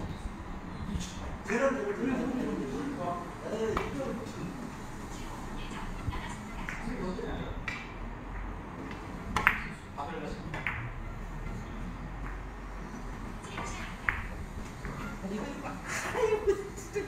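Four-ball carom billiards shots: the cue tip striking the cue ball and the balls clicking against one another, in a series of sharp clicks. The loudest click comes about nine and a half seconds in, with low voices talking in the background.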